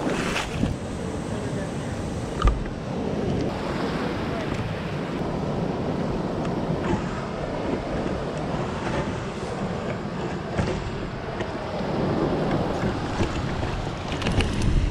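Wind buffeting the microphone over the steady wash of surf around the tide pools, with a single thump about two and a half seconds in.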